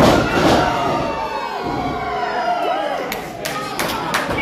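Wrestling ring: a body slamming onto the ring mat with a heavy thud at the very start, then the crowd shouting and cheering in reaction. A few sharp knocks near the end.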